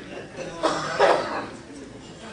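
A person coughing twice, about half a second apart, the second cough louder.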